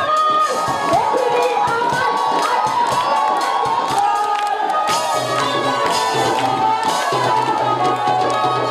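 Dance music with a fast, steady beat and a wavering melody line, with a crowd cheering and shouting over it.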